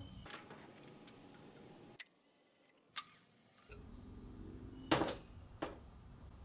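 Scattered metallic clinks and rattles of hand tools and loose metal parts on a Ford 5.0 V8's intake manifold as it is being unbolted, with a louder clank near the end and a quiet gap in the middle.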